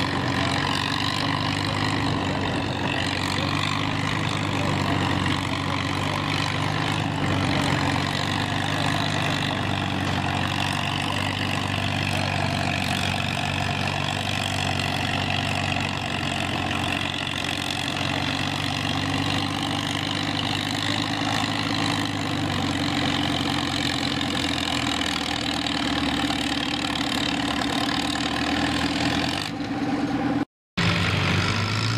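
Farmall tractor engine running steadily while it pulls a weight-transfer sled, its low drone holding an even pitch throughout.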